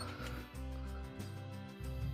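Quiet background music with sustained low notes changing every half second or so.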